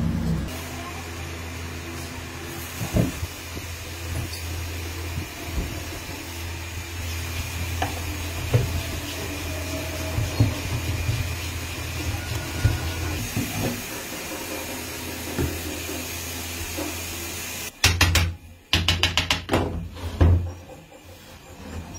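Light wooden knocks and taps as guitar-body blocks and braces are fitted by hand, over a steady low workshop hum. Near the end comes a quick run of sharp strokes.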